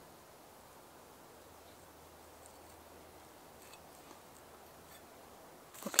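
A kitchen knife trimming sinew off a raw pork loin on a wooden cutting board, heard only as a few faint, soft ticks over a very quiet background.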